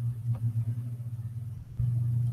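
A steady low hum that sags briefly about one and a half seconds in and comes back with a low thump.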